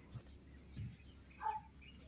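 Mostly quiet, with one faint, short chirp-like animal call about one and a half seconds in.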